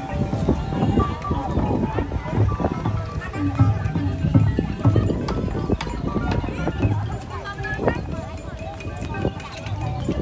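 Busy street ambience: people talking and music playing, with frequent short clicks and knocks.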